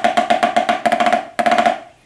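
Snare drum played with wooden sticks: five-stroke rolls, a rapid flurry of strokes in four bunches about half a second apart, stopping near the end.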